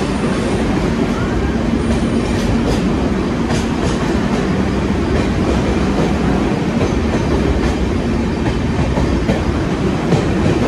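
Passenger train running through a tunnel: a loud, steady rumble of wheels on rail, closed in by the tunnel walls, with scattered clicks from the wheels.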